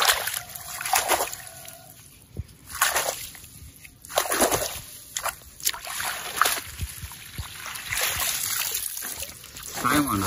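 Water splashing and sloshing in irregular bursts as a mesh net trap holding eels is rinsed by hand in shallow muddy water.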